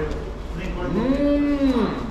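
A man's long hummed "mmm" with his mouth full of food, rising in pitch, held for about a second, then falling: a sound of delight at the taste while chewing.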